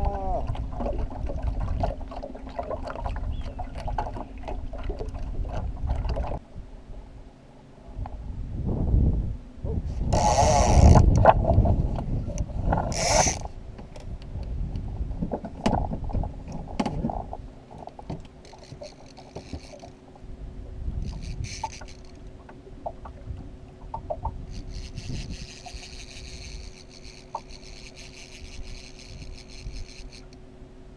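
Small outboard kicker motor running steadily at trolling speed, a low even hum whose pitch steps up slightly about six seconds in. A loud rushing noise swells briefly around the middle.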